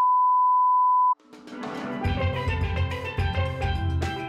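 A steady, high-pitched test-card beep that lasts about a second and cuts off abruptly, then music fades in with bright, pitched percussion notes over a drum beat.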